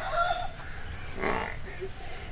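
Domestic chickens: the tail of a rooster's crow fades out, then a brief cluck comes a little over a second in.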